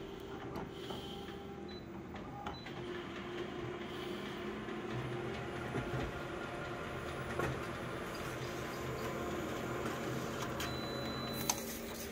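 Konica Minolta bizhub colour copier running an enlarged copy job: a steady mechanical whir of scanning and printing. A deeper drive hum joins about halfway through, and a few light clicks come, the last just before the end.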